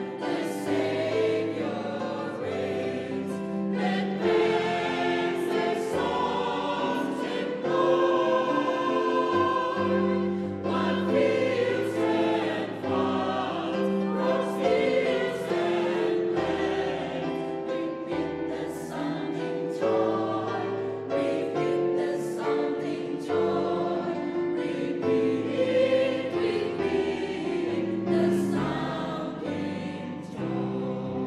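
Mixed choir of men and women singing a carol, over low sustained accompaniment notes that change step by step.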